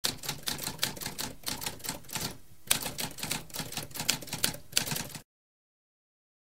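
Manual typewriter keys being struck in a rapid, uneven run of sharp clicks, about five a second, with a short pause a little before halfway; the typing stops about a second before the end.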